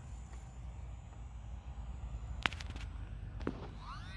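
Wind rumbling on the microphone, with one sharp click a little past halfway through and a softer click about a second later.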